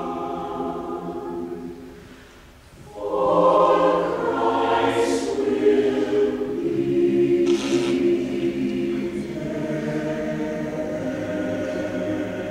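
Mixed choir singing sustained chords. The sound dies away about two seconds in and the voices come back in full a second later, with 's' consonants hissing out twice.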